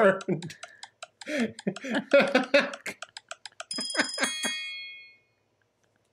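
Laughter over a quick run of sharp clicks, then a small bell rings once, about four seconds in, its high ring fading away over about a second.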